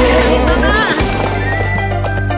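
Children's song backing music with steady bass notes, and a horse whinny sound effect about halfway through, a quick wavering call that rises and falls in pitch.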